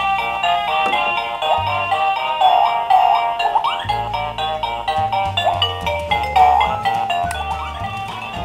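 A toy dinosaur's built-in electronic melody played through its small speaker: a bright, bouncy tune with bass notes and repeated short rising whistle-like slides.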